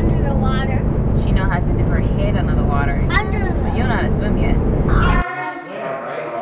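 Low rumble of a car's engine and road noise heard inside the cabin under a woman's voice. It cuts off about five seconds in, giving way to voices in a quieter room.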